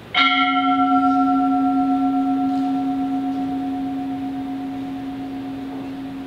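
A single strike of an altar bell, the consecration bell rung as the host is elevated at Mass. Its clear tone rings on, the higher overtones dying away within a few seconds while the low note keeps sounding and slowly fades.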